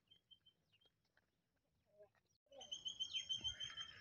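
Near silence at first, then, from a little past halfway, faint outdoor noise with a bird chirping a fast, even run of short high notes.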